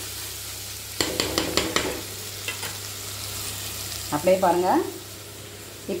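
Chopped onion and tomato frying in oil in a clay pot, sizzling steadily, with a spoon stirring them and scraping against the pot in a quick run about a second in.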